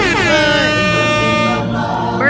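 Music with a loud sung voice that slides down in pitch and then holds a long note, over a steady bass.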